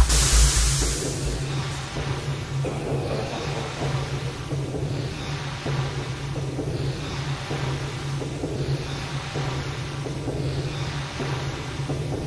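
Breakdown in a techno track: the kick drum stops about a second and a half in, leaving a steady low bass drone under a hissing texture that swells and fades about every two seconds.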